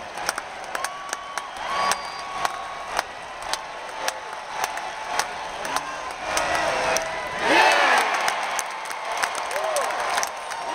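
Large ballpark crowd cheering and clapping, with scattered sharp claps and shouts, swelling into loud massed yelling about seven and a half seconds in.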